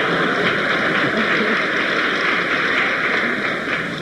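Theatre audience applauding and laughing, a dense steady clatter of clapping that dies away near the end.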